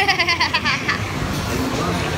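A boy laughing in a quick run of giggles through about the first second, then a steady low background rumble.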